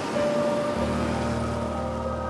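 Road traffic passing close by, with a vehicle going past. Sustained background-music chords enter softly about a second in.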